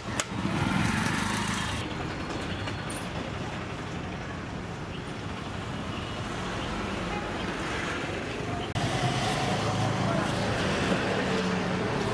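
Roadside street ambience: steady passing-traffic noise with indistinct background voices.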